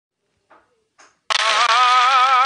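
Two faint short sounds, then a loud held musical note with vibrato starts abruptly about a second and a half in.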